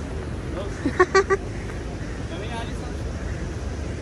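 Outdoor street ambience with a steady low hum and passers-by's voices. About a second in come three quick, loud, pitched blips, the loudest sounds here.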